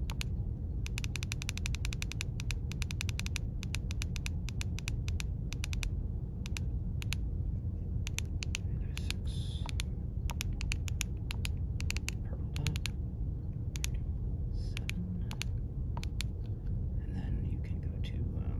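Keypad buttons on a Baofeng UV-5R handheld radio being pressed: a fast run of clicks about a second in, then scattered single clicks, over a steady low hum.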